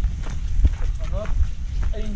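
Low, fluctuating rumble on the microphone of a camera being carried on foot, with a few faint ticks and a brief faint voice about a second in.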